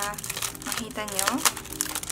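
Clear plastic wrapping crinkling in short bursts as a small plastic smartphone stand is pulled out of it by hand, with a brief spoken word about a second in.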